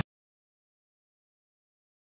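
Silence: the soundtrack cuts off abruptly at the start and stays muted.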